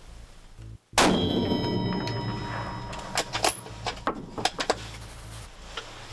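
A sudden loud metallic clang about a second in, ringing on in several clear tones that fade over a couple of seconds, followed by a few sharp clicks, over a steady low music bed: a dramatic sound-effect hit in the show's score.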